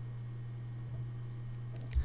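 Steady low electrical hum with faint background hiss, and a brief click near the end.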